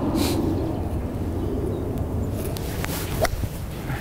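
A golf club striking the ball in a full swing, a short sharp click late on, over a steady outdoor wind haze.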